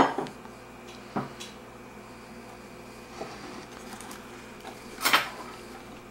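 A glass liquor bottle handled and set into a lined compartment of a leatherette cocktail case, giving a few knocks and bumps. The first is sharp at the very start, a lighter one comes about a second in, and the loudest is a short clatter about five seconds in.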